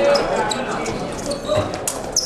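Fencers' shoes squeaking and thudding on the piste during footwork, a few sharp clicks among them, over voices echoing in a large hall.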